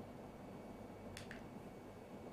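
Faint steady low hum and background noise, with two short soft clicks close together just past the middle.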